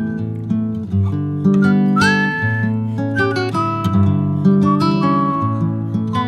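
Acoustic guitar strumming and picking chords, with a higher melody line held over it that slides up into some of its notes.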